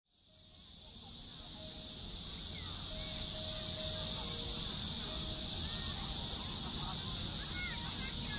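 Outdoor evening riverside ambience fading in: a steady high-pitched hiss over a low rumble, with a few short chirping calls near the end.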